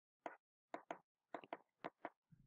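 Faint clicks of a computer mouse, about seven short sharp ones in two seconds, some coming in quick pairs.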